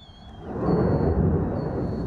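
Low rumble of a rocket salvo being launched, building up about half a second in and then holding steady.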